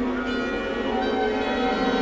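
Symphony orchestra playing contemporary classical music: a dense, sustained chord of many steady, ringing tones, with a brighter layer of higher tones entering about a quarter second in.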